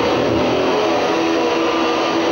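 A rock band's electric guitar comes in as a song opens live: a dense, steady wash of sound with a few held notes.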